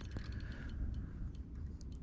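Low wind rumble on the microphone, with a few faint ticks from the spinning reel while a hooked fish is played.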